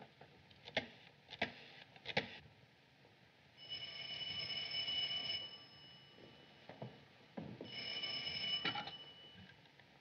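Desk telephone bell ringing twice, each ring a steady tone of nearly two seconds with a pause of about two seconds between. The second ring stops as the receiver is lifted. A few soft clicks come before the first ring.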